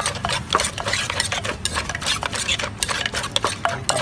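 A wooden pestle pounds tam pa (spicy papaya salad) in a clay mortar while a metal spoon scrapes and turns the mix. It is a rapid, irregular run of short knocks.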